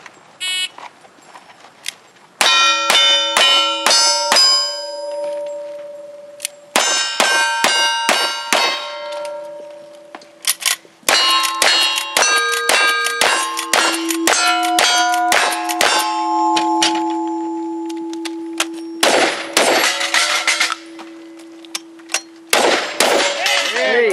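Cowboy action shooting stage: rapid strings of gunshots at steel targets, each hit setting the plates ringing with clear, held tones. There are three quick strings of shots with ringing, then two bunched volleys of shots near the end with little ringing.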